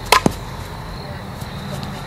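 Softball bat striking a pitched softball with one sharp crack, followed a moment later by a fainter knock.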